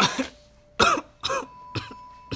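A wounded man with a bloodied chest coughing and gasping for breath in four short, choking bursts. A thin steady high tone comes in about halfway through.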